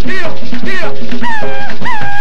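Mapalé music: fast, steady hand drumming with short, arching sung calls from voices over it.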